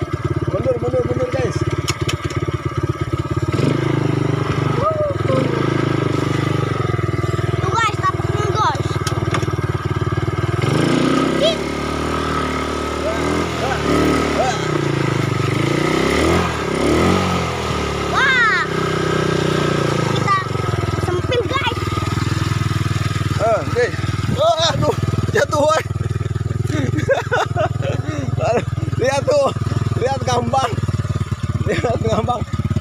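Small quad bike engine running steadily, then revving up and down with a wavering pitch for several seconds midway, as the throttle is worked on a slippery mud track.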